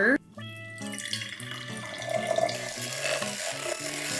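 Water poured from a mug into a glass jar onto matcha powder, a steady pour starting about a second in, over background music.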